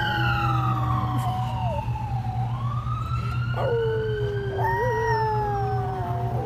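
A small black-and-tan dog howling, head raised, in long wavering notes, along with a wailing siren whose pitch slowly falls and then rises again.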